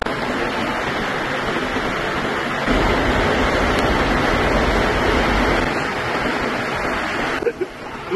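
Water rushing down a water slide's runout lane: a steady hiss, louder with a deeper rumble for a few seconds in the middle, that cuts off suddenly near the end.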